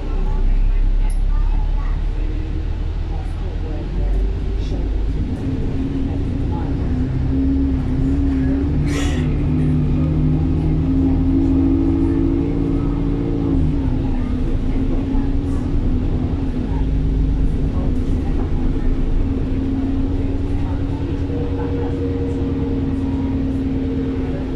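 Double-decker bus diesel engine heard from the upper deck, its note climbing slowly for about ten seconds as the bus pulls up through a gear, then dropping at a gear change and running steady. A sharp knock comes about nine seconds in. The bus is one whose performance is sluggish.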